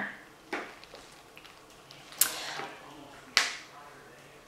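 Handling noises from a slim cosmetic brow pencil: a faint click about half a second in, then two sharper clicks about a second apart, each dying away quickly.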